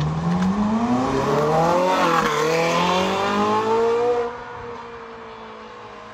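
Ferrari 458 Italia's naturally aspirated V8 accelerating hard, its pitch climbing steeply with a quick dip about two seconds in before climbing again. About four seconds in the sound drops off sharply and carries on faintly as the car pulls away.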